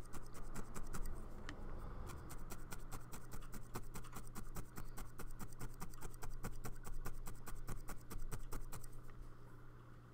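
A felting needle poking rapidly and repeatedly through wool fiber and a felt base into a felting mat: an even series of light stabs that stops shortly before the end.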